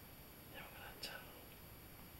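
A person whispering briefly and faintly, with a light click about a second in; otherwise near silence.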